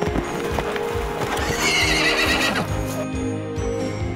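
A horse whinny sound effect, falling in pitch, about one and a half seconds in, over galloping hoofbeats and background music.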